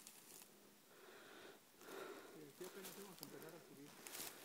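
Near silence, with faint, distant voices talking in the second half.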